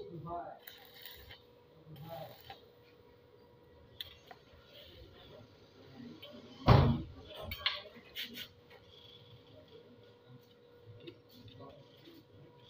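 Scattered metal clinks and knocks from work on a steel angle-iron gate rail, the loudest a single heavy knock about seven seconds in, over a faint steady hum.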